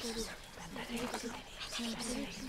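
Several voices whispering and murmuring low and indistinctly, overlapping in short broken phrases.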